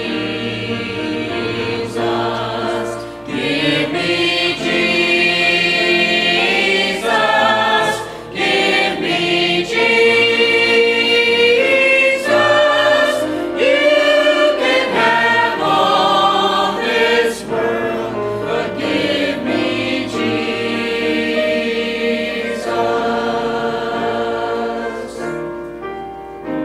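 Church choir of mixed men's and women's voices singing a hymn together, the singing dropping away near the end.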